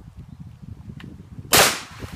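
A dog leaping into a pond: one loud, sudden splash about one and a half seconds in, fading quickly, over a low rumble.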